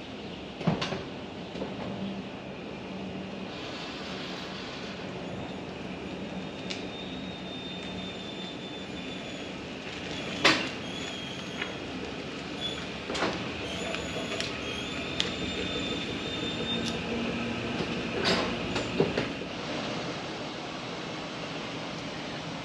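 Small steel utility trailer rolling over concrete with a steady rumble. Its frame squeaks now and then and gives several sharp knocks and clanks, about halfway through and again near the end.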